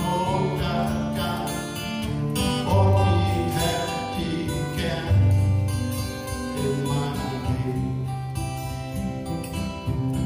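Two acoustic guitars playing a folk song together, strummed and picked, with louder low bass notes ringing out about three and five seconds in.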